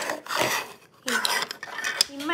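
Hard plastic toy pieces and a plastic box clattering and scraping on a tabletop as they are handled, in two stretches with a short pause under a second in.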